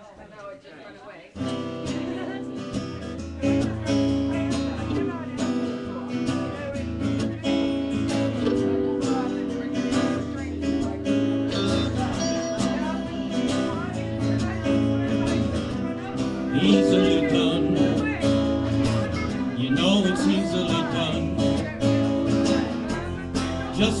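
Live band playing the instrumental intro of a slow song on acoustic and electric guitars with a rhythm section, coming in about a second in after a brief hush; the singing starts right at the end.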